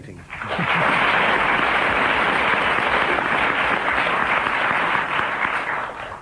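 Studio audience applauding with a little laughter, swelling up within the first half-second and dying away near the end.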